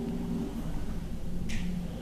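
Quiet pause with a faint low hum of a man's voice, broken into short stretches, and one brief rustle about one and a half seconds in, as a sheet of paper is handled.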